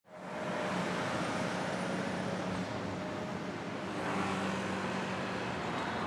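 City street traffic: a steady wash of road noise with the hum of car and bus engines, fading in at the start.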